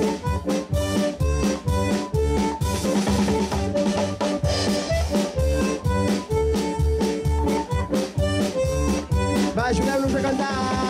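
Live dance music from a small band: a drum kit keeps a steady beat under a held, pitched melody line.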